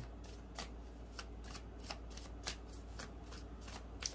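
A tarot deck being shuffled by hand: a faint, irregular run of light card clicks, about four or five a second.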